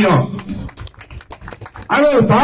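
A man's voice through a microphone breaks off, then a quick, irregular run of faint clicks fills the pause.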